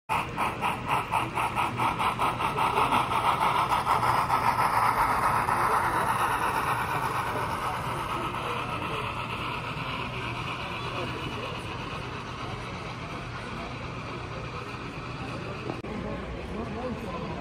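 HO scale model freight train running past close by, its wheels clicking over the track in a quick, even rhythm of about three clicks a second, loudest at first and then fading as it moves away.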